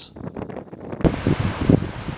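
Wind buffeting the microphone over the wash of surf on a rocky shore, cutting in suddenly about a second in with a gusty rumble.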